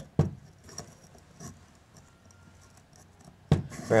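Light handling knock and a few faint metallic clicks from the piston of a 1989 Yamaha YZ80 two-stroke being rocked by hand in its cylinder bore. It barely moves, which the owner takes to mean it possibly just needs a set of rings.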